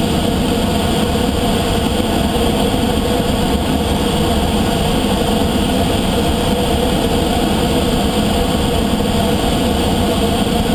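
Steady rush of airflow in a glider's cockpit during gliding flight, air streaming over the canopy and fuselage, with a low rumble underneath.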